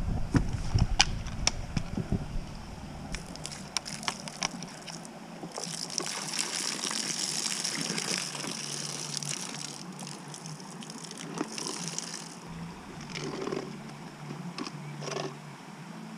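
Water pouring out of a plastic-bottle minnow trap and splashing into a creek: a steady pour from about six seconds in that stops near twelve seconds. Before it, the plastic bottle clicks and knocks as it is handled.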